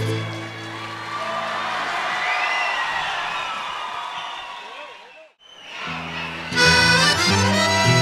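An estudiantina of accordions and guitars closes a piece, followed by audience crowd noise that swells and fades; after a brief near-silence the ensemble starts up again with accordions and guitars about six seconds in.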